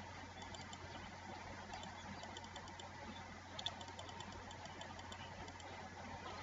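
Faint computer keyboard and mouse clicks, scattered and light, with a slightly louder cluster a little past halfway, over a steady low electrical hum.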